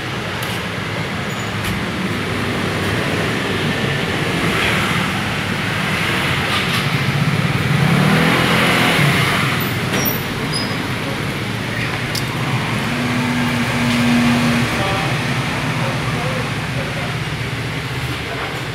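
Steady road traffic with vehicle engines passing, loudest about eight seconds in, and voices talking in the background.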